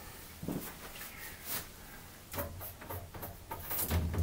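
Faint, scattered scratches and light taps of fingertips picking at the edge of a plexiglass panel, trying to lift its protective film.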